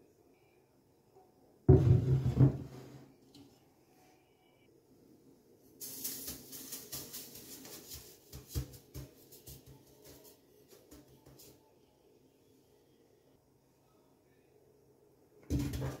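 Granulated sugar poured from a bowl into a large cooking pot: a grainy hiss of about five seconds. Near the end, halved plums tumble from a bowl into the pot with a run of dull knocks against the pot. About two seconds in, a short loud knock with a deep ringing from the pot.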